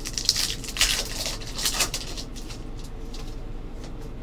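A foil trading-card pack wrapper crinkling and tearing as it is opened, in a few sharp rustles during the first two seconds, then only light handling.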